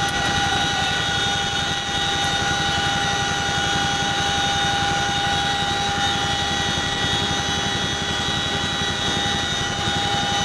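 CH-47 Chinook tandem-rotor helicopter in flight, heard from the open rear cargo ramp. It makes a loud, unbroken drone: several steady high whine tones over a fast, even low beating from the rotors.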